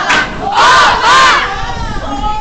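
A group of teenagers shouting together, two loud cheers in a row, each rising and then falling in pitch.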